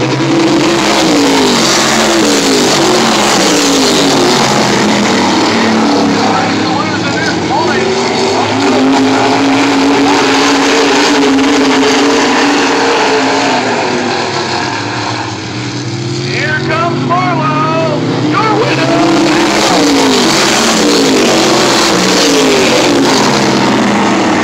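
A field of modified race cars running at speed around an oval, their engines overlapping. The pitch rises and falls repeatedly as the cars accelerate down the straights and lift for the turns, and the sound dips briefly about two-thirds of the way through as the pack is at the far side of the track.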